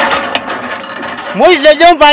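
A metal village hand pump being worked: its handle and pump head clank and rattle as the handle is pumped. A voice comes in loudly about one and a half seconds in.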